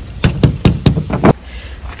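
A quick run of about seven sharp knocks, about five a second, stopping about a second and a half in: a gloved hand striking and working the ice-encased latch of a greenhouse door.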